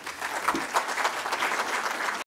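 Audience applauding, rising over the first half-second and then holding steady.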